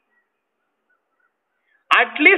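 Near silence: a pause in a man's speech. Just before the end, a sharp click and his voice start again.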